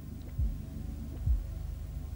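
A steady low hum with two soft, low thuds, about half a second and a second and a quarter in.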